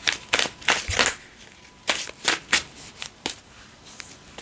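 A deck of tarot cards shuffled by hand: short, irregular bursts of cards slapping and riffling together.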